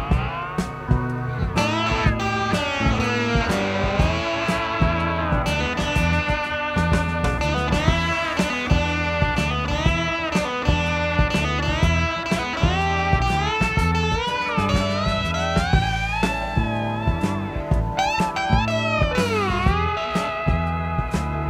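Blues guitar solo on an overdriven black Fender Stratocaster through a Fender Champ amp, full of string bends and vibrato, over a backing track with a steady bass line and drums.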